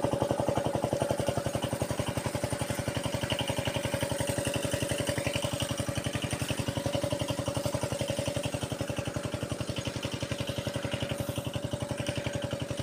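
Irrigation pump engine running steadily with a fast, even chugging and a constant hum.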